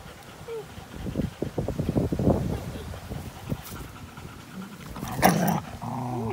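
A dog breathing and snuffling right at the microphone during rough play, with irregular short huffs and a brief small whine about half a second in. A short, louder, harsh burst a little after five seconds.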